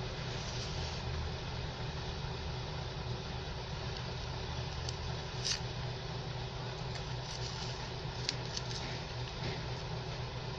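A metal knife blade working around the inside of a plastic plant pot to loosen the soil and root ball, giving a few short, sharp clicks and scrapes about halfway through and again near the end, over a steady background hum.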